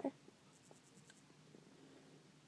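Almost silent room tone with a faint low hum and a few soft light ticks.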